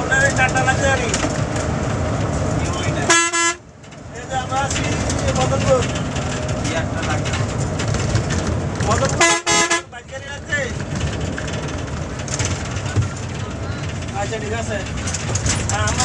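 The steady rumble of a BRTC bus's engine and tyres heard from inside the cabin, cut by two short horn blasts, one about three seconds in and another about nine seconds in, which are the loudest sounds. Passengers' voices murmur in the background.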